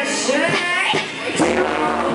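Live rock band: a female lead vocal with gliding held notes over electric guitar, and a low bass line and steady beat coming in about a second and a half in.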